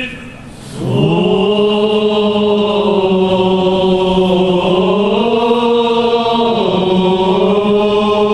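Armenian liturgical chant sung by men's voices: a single melodic line of long held notes with slow, ornamented turns in pitch. It breaks off briefly at the start, then comes back in with an upward scoop about a second in and carries on.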